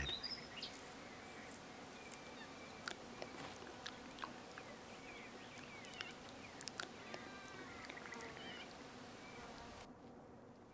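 Faint natural ambience of insects buzzing steadily, with a few short high chirps in the second half.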